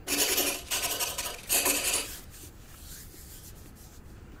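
Marker pen scratching across a whiteboard in three quick writing strokes during the first two seconds.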